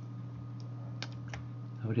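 A few sharp, isolated clicks of computer input, two of them about a second in and a third of a second apart, over a steady low electrical hum on the microphone.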